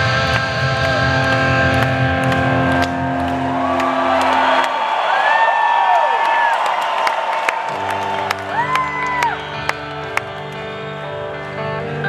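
Electric guitar played live through an arena PA: held, sustained notes over a low drone. Partway through, the low notes drop away while high notes bend up and down, and the low notes come back about two-thirds of the way in.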